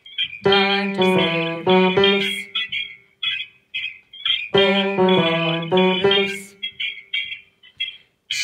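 Piano accompaniment playing chords, the same short phrase heard twice about four seconds apart as the track loops.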